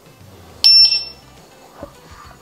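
Begode Extreme electric unicycle switching on: a click and then a short, high beep from the wheel about two-thirds of a second in, over a faint low hum.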